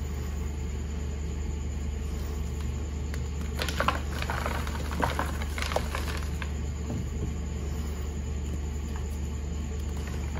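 Reformed gym chalk blocks being crushed and crumbled by hand, with a cluster of soft crunches and crackles about four seconds in that lasts a couple of seconds. A steady low hum runs underneath.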